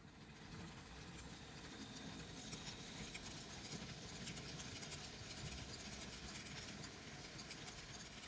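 N gauge model train with a rake of tank wagons running along the track: a faint steady rumble with rapid small clicks of the wheels over the rail joints, fading in over the first second.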